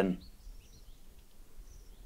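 A spoken word trails off at the start. Then there is faint outdoor background noise with a few faint, high, short bird chirps.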